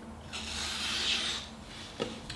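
Kai Shun chef's knife slicing through a hand-held sheet of paper: a hissing cut lasting about a second. It is a paper test of an edge resharpened on the bottom of a ceramic mug, which now cuts a little better.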